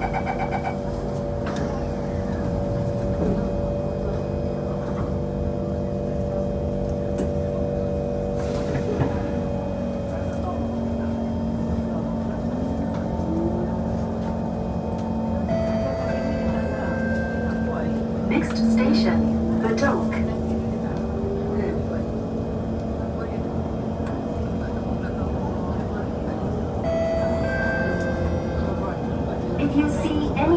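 C151 metro train pulling out of a station, heard from inside the carriage: the traction motors give a whine that climbs in pitch as the train gathers speed from about ten seconds in, over steady running noise and a few clacks from the wheels on the rails. Voices are heard in the carriage.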